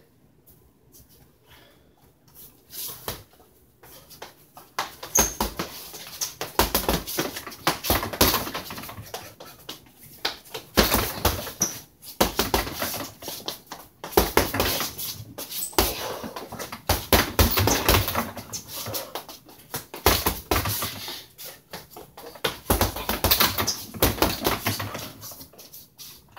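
Boxing gloves striking a hanging heavy punching bag in irregular flurries of punches, starting about two seconds in.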